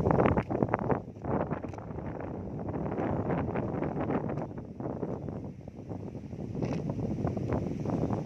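Wind buffeting the microphone in irregular gusts, loudest in the first second.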